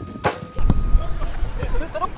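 A football shot's impact, a sharp thud about a quarter second in as the goalkeeper dives for the ball, then a second softer knock. A loud low rumble and shouting voices follow.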